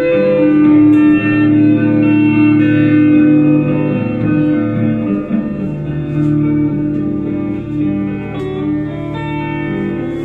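Electric guitar playing a slow instrumental passage of long, sustained notes through an amplifier, getting a little quieter toward the end.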